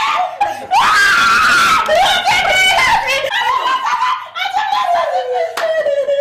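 A woman screaming and wailing in distress, in several high cries, ending in one long falling wail.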